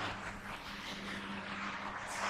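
Steady rushing background noise with a low, even hum running under it.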